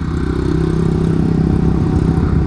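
Motorbike engine running at a steady, even pitch while being ridden, heard from the rider's seat with a low road rumble underneath.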